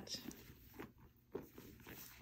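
Faint handling noise: soft rustles and a light knock a little after a second in, as a charging cable is tucked into the back pocket of a leather handbag.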